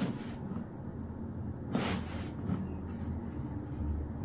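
Soft rustling of a cloth towel being handled and shifted around a patient's feet, a few brief rustles with the loudest about two seconds in, over a low steady hum.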